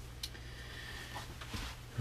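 Faint handling of a graphite pencil on sketchbook paper: a light click and brief soft scratching over a low steady room hum.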